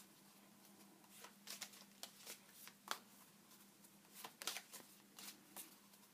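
Tarot cards being shuffled by hand: faint, irregular soft flicks and slides of the cards, the loudest about three seconds in.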